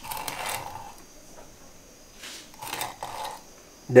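Knife blade scoring across a traíra's flank in closely spaced cuts, scraping and crackling as it breaks the fish's fine bones. There are a few short strokes: one at the start and a couple more two to three seconds in.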